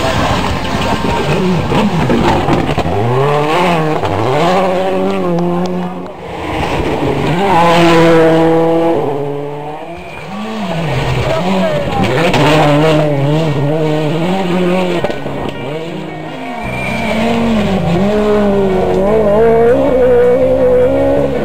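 Rally cars passing on a gravel stage, their engines revving hard and dropping back with each gear change or lift, the sound swelling and fading in several surges.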